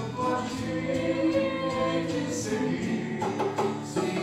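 Voices singing a slow devotional song together in held notes, accompanied by acoustic guitar.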